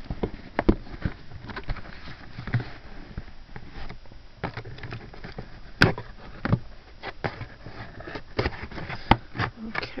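Cardboard shipping box being opened by hand: the flaps rustle and scrape as they are pulled apart, with scattered small clicks and a few sharp snaps, the loudest about six seconds in.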